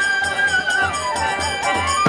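Bamboo flute playing a kirtan melody: one long held high note that then bends and slides down, over khol drum, violin and a regular beat of hand percussion.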